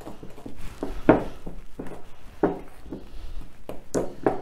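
Wooden spoon stirring a thick, stiff almond cake batter in a glass mixing bowl, scraping and knocking against the glass in repeated strokes about every half second, the strongest about a second in.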